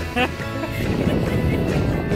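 Background music over a brief rising squeal near the start, then a rough rushing noise of water and compressed air as a soda-bottle water rocket launches from a 200 PSI air-tank launcher.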